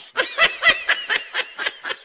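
A person laughing: a quick run of short, high-pitched laugh pulses, several a second, loudest in the first half.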